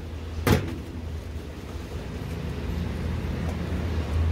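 Steady low hum from a bank of dumpling steamer pots, with one sharp metallic knock about half a second in.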